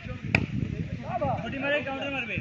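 A single sharp slap of a hand striking a volleyball, about a third of a second in, among players' shouted calls.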